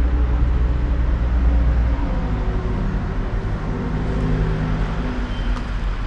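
An engine running steadily with a low hum, its pitch shifting slightly a few times.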